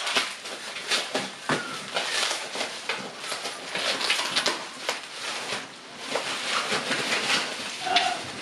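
Bubble wrap and plastic packaging crinkling and rustling as it is pulled off by hand, a dense stream of small irregular crackles.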